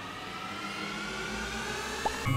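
A steady whooshing swell that slowly grows louder, with a faint tone climbing gradually in pitch through it.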